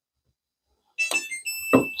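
Niimbot B18 label printer's power-on chime, switched back on after a firmware update: a short run of high electronic beeps stepping in pitch, then one held tone, starting about halfway through.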